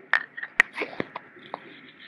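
Masala and drumsticks cooking in oil in a wok with a faint sizzle, broken by a handful of sharp clicks and taps, the loudest about half a second in.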